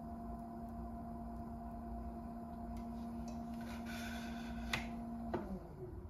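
Electric pottery wheel motor humming steadily, then after a sharp click about five seconds in the hum glides down in pitch and fades as the wheel winds down. Before that, a wet sponge and hands rub on the spinning clay.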